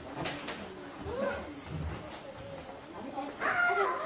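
Bare feet of a karateka stepping and stamping on a dojo floor during the kata Kushanku, with sharp snaps of the gi sleeves early on. Near the end a drawn-out pitched vocal cry comes in and carries on past the end.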